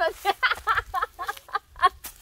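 A woman laughing in a quick run of short bursts.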